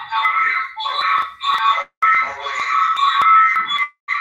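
Audio feedback on the call link: steady ringing tones at the same few pitches sound over a voice in four bursts with short breaks between them.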